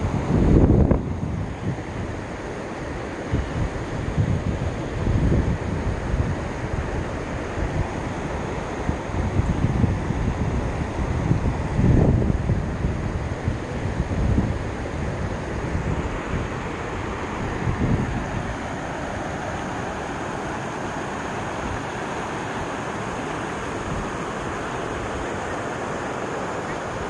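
Wind buffeting the microphone in repeated low gusts over the first eighteen seconds or so. Under them runs a steady rushing hiss, typical of falling water from the waterfall.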